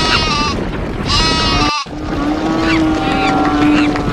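Animal stampede sound effect: a dense, steady rumble of a running herd with repeated bleating animal calls over it. It cuts out for an instant just under two seconds in.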